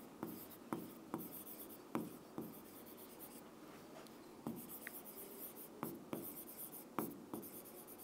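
A marker pen writing on a board: faint, irregularly spaced short strokes and taps of the tip on the surface.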